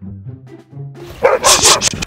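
Light background music, then about a second in loud, rapid dog barking breaks in. The barks are a fake, played back for a prank.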